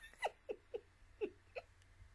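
A woman laughing softly into a close microphone: about five short chuckles, each falling in pitch and spaced roughly a quarter second apart, trailing off.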